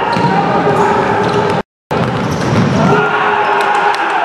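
Players' shouts and calls echoing in a sports hall, with thuds of the futsal ball and feet on the court. The sound cuts out completely for a moment partway through.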